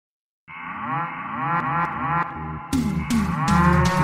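A cow mooing in one long, drawn-out call that starts about half a second in. Intro music with drums comes in under it about 2.7 s in.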